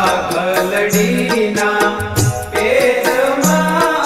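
Gujarati garba-style devotional kirtan music: a melody over a steady, quick percussion beat, with a low bass note recurring every couple of seconds.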